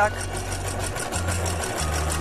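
Electric sewing machine stitching through cotton fabric: a rapid, even run of needle strokes over a low motor hum that shifts a few times as the sewing speed changes.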